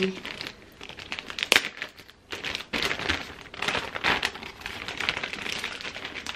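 Clear plastic protective wrap crinkling as it is handled around a handbag. It comes in irregular crackles, with one sharp crackle about a second and a half in and busier crinkling through the second half.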